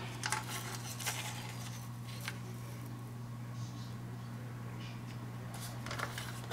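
Cardstock being handled on a paper trimmer: a few light clicks and soft paper sliding, over a steady low hum.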